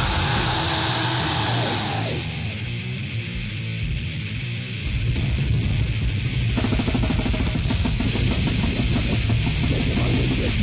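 Old-school death metal recording from 1991: distorted guitars, bass and drums. A pitch slides downward in the first two seconds, then comes a thinner passage without cymbals. From a little past halfway the full band is back with fast drumming and cymbals.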